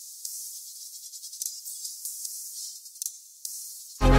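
Electronic track playing back quietly with only its highs left, nothing below the treble: a thin hiss with rapid percussion ticks.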